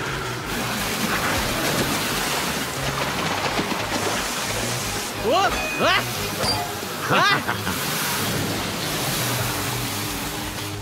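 Cartoon soundtrack: a steady rushing noise and low score music, with two short rising cries of "A!" about five and seven seconds in.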